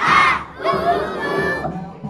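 A group of young children shouting loudly in unison: one shout right at the start, then a second, longer one from just over half a second in.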